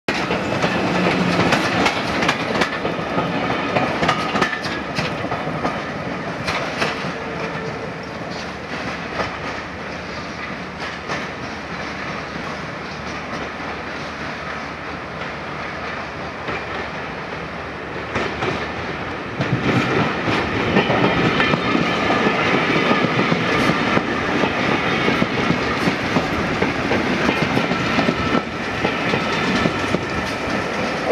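Electric multiple-unit passenger trains running over station pointwork, their wheels clacking over the rail joints. The sound grows louder about twenty seconds in as a train runs past close by.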